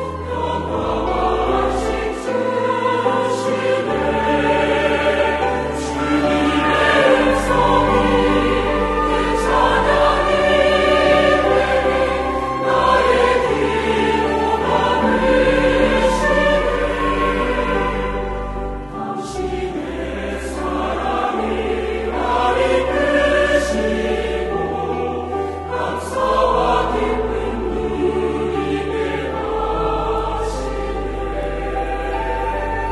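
Large mixed church choir singing a Korean hymn in harmony, with instrumental accompaniment that includes clarinets, over held bass notes that change every second or two.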